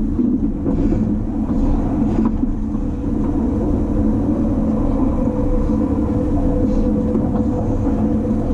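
Running noise heard inside a JR East E257 series limited-express train car at speed: a steady rumble of wheels on rail with a constant hum, and a few faint clicks.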